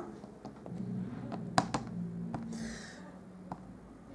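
Light taps and clicks of a plastic ink pad being dabbed onto a clear photopolymer stamp on an acrylic block, with a brief soft rub a little before three seconds in, over a faint low hum.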